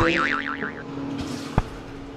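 A cartoon-style boing sound effect, a quickly wobbling tone lasting under a second, over soft background music, followed by a single sharp click about one and a half seconds in.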